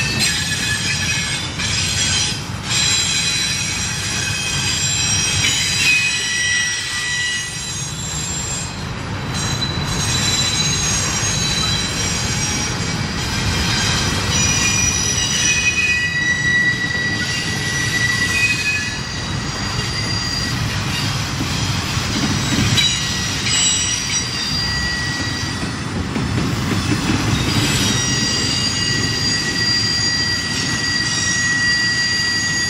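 Double-stack intermodal well cars of a Norfolk Southern freight train rolling through a sharp curve: steel wheels squealing against the rail in high tones that shift and come and go, over a steady low rumble of wheels on track.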